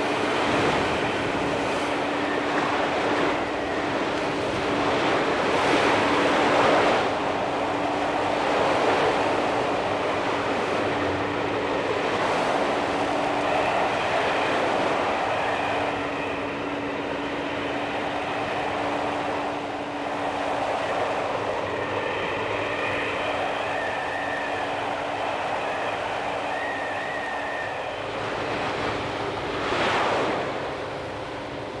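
A fishing boat's engine running with a steady hum under the rush and splash of rough seas breaking against and over the hull, with a louder wave crash about seven seconds in.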